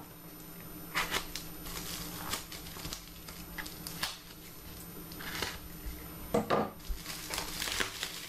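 Plastic bubble wrap crinkling and rustling in irregular short bursts as it is slit with a knife and pulled off a small box.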